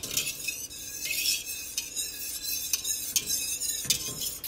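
Wire whisk stirring a hot liquid in a stainless steel pot, gently, in repeated strokes, its wires scraping and clicking against the metal sides and bottom.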